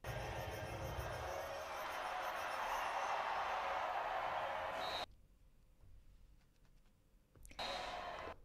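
Stadium crowd noise from a field hockey match broadcast: a steady din that cuts off suddenly about five seconds in, with a second short burst near the end.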